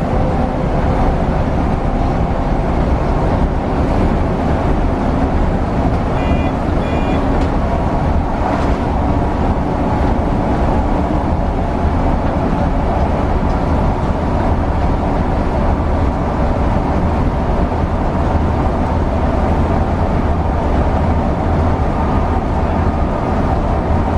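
Inside a Mercedes-Benz O405NH articulated bus cruising along a guided concrete busway: a steady, loud, low rumble of the engine and tyres running on the concrete guide track. A few short high beeps sound about six seconds in.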